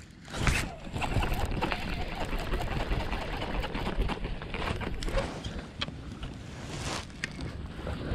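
Water splashing and sloshing beside a fishing kayak as a hooked bass is reeled in and landed. The splashing starts suddenly about half a second in and goes on, with scattered sharp clicks and knocks.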